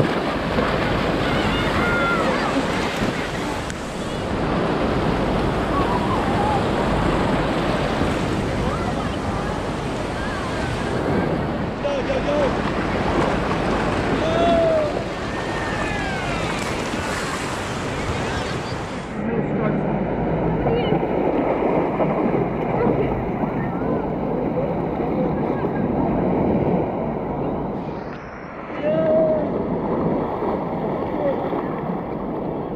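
Shallow beach surf washing and rushing in whitewater, with wind on the microphone and scattered distant children's calls and shouts. About two-thirds of the way through, the hiss drops away and the wash sounds duller.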